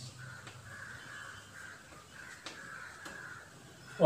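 Faint bird calls, repeated several times, with a few soft taps.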